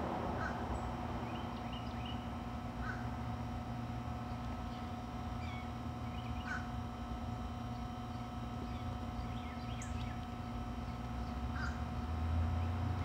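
A crow cawing: four short calls spaced a few seconds apart, over faint chirps of small birds and a steady low hum.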